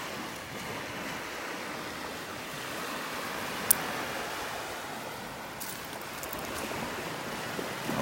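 Gentle surf washing on a beach as a steady hiss, with one sharp click about three and a half seconds in.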